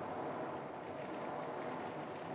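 Quiet, steady room tone: an even background hiss with no distinct event.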